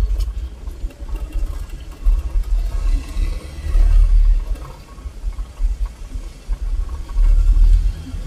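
Vehicle driving along a paved country road, heard from on board: a low rumble that swells and fades every second or two.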